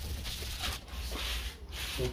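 Wet sandpaper, 1500 grit on a sanding pad, rubbing back and forth over a plastic car headlight lens in repeated hissing strokes. It is wet-sanding away the lens's yellowed, oxidised surface.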